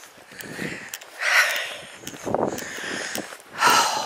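A walker's breathing close to the microphone while on the move: hazy puffs of breath, the strongest about a second in and again near the end.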